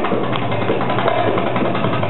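Live Egyptian band music led by darbuka (Egyptian tabla) drumming, a run of short strokes over the rest of the band.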